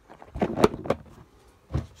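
Knocks and clatter of a plastic bowl being handled: a quick cluster of knocks about half a second in, and one more near the end.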